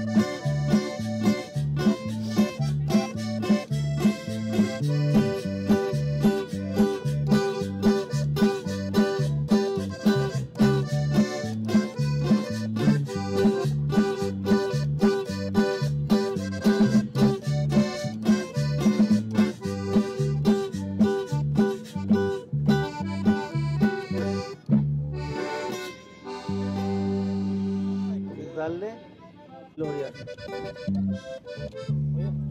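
Live norteño-style band playing with a steady beat: button accordion leading over guitars, bass, drums and keyboard. The song ends about 25 seconds in, followed by a held chord and a short rising slide near the end.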